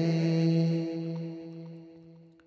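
A steady vocal drone held on one low note in an unaccompanied naat, left over after the sung phrase ends. It fades away gradually through the second half.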